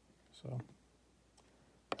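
Hard plastic NGC coin slabs handled and knocked together: a faint click a little after one second, then a sharp plastic click just before the end, over quiet room tone.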